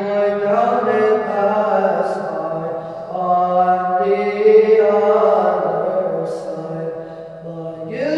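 Byzantine chant from a chanter in a church, a slow melismatic vocal line with long held notes, fading briefly near the end.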